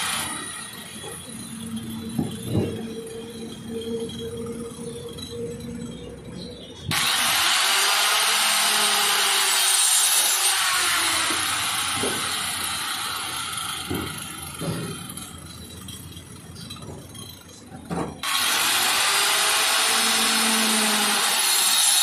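Handheld electric circular saw cutting through a plastic drum. The first several seconds are quieter, with a few knocks as the drum is shifted; then loud cutting starts abruptly about seven seconds in, runs for about eleven seconds, stops suddenly, and starts again near the end.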